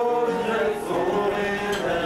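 A man singing a folk song in long, held notes, accompanying himself on a strummed acoustic guitar.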